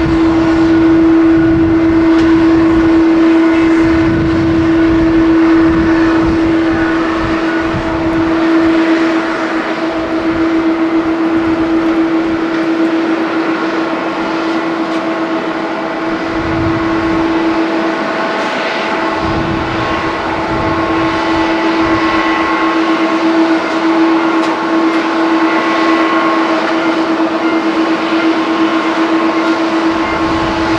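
Jet airliner engines running at taxi idle: a steady whine with higher overtones, over an irregular low rumble.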